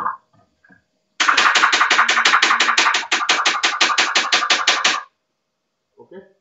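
A rapid, even series of sharp knocks or clicks, about six a second, lasting about four seconds with a slight break near the middle.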